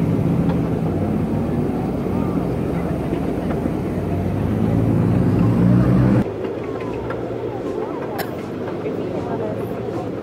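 A passenger train running, with a steady low rumble and hum. About six seconds in the sound drops suddenly to a quieter rumble with faint voices.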